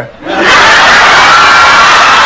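Studio audience laughing loudly at a punchline, the laughter swelling up about half a second in and holding steady.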